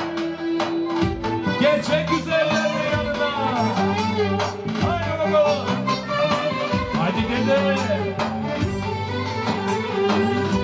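Folk dance music from a band: a clarinet plays a fast, winding, ornamented melody over drums and bass.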